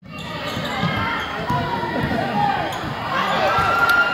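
Basketball dribbled on a hardwood gym floor under a busy mix of players' and spectators' voices, with a few sharp bounces near the end. A held high-pitched tone starts about three seconds in.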